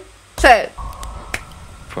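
A short spoken exclamation, then the music video's opening sound comes in: a steady high electronic tone that sinks very slightly, with one sharp click a little over a second in.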